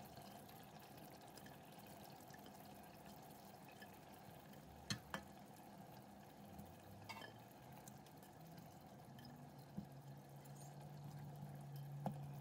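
Near silence: a few faint soft clicks as raw cauliflower florets are set by hand into thick tomato sauce in a stainless steel pot, two close together about five seconds in and one about seven seconds in. A faint low hum comes in near the end.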